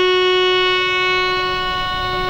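Violin playing one long bowed note, held steady at one pitch and slowly fading.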